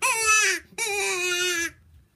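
Reed game call of turned European yew being blown in two calls. The first starts high and falls in pitch. The second is held longer and steadier and stops near the end. These are test blows to check that the newly set reed sounds right.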